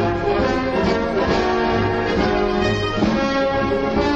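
Orchestral film soundtrack music with prominent brass, playing sustained chords.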